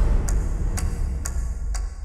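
Trailer sound design: a steady ticking, about two ticks a second, over a low rumbling drone that slowly fades.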